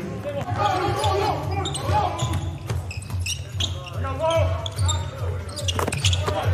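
Basketball dribbled on a hardwood court, bouncing about twice a second, with players' voices calling out on the court.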